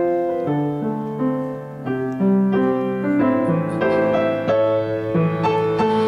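Piano playing an instrumental interlude between sung verses of a gospel song: sustained chords over a bass line that steps from note to note.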